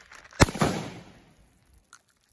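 A single gunshot about half a second in: one sharp crack followed by an echo that dies away over most of a second.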